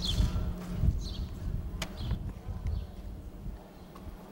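Footsteps on a concrete walkway, an uneven series of sharp clicks about every half second, over low rumble from the handheld camcorder.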